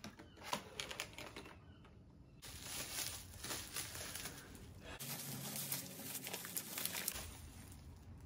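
Brown packing paper and a plastic bag being crumpled and rustled by hand as a cardboard box is unpacked. The rustling is patchy with light clicks at first, then a dense continuous crinkle from a couple of seconds in.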